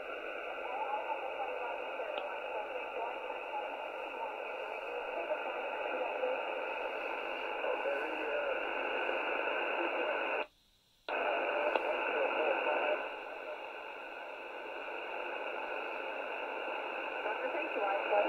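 Shortwave receiver's SSB audio between transmissions: a steady hiss of HF band noise, cut off by the receiver's audio passband top and bottom. A little past the middle the noise cuts out abruptly for about half a second, then returns.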